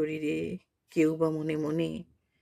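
A woman's voice reciting a poem in Bengali: two spoken phrases with a short pause between.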